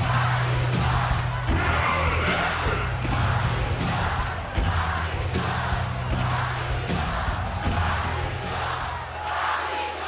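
Wrestling entrance theme music with a steady beat and heavy bass, playing over a loud arena crowd; the music fades out near the end.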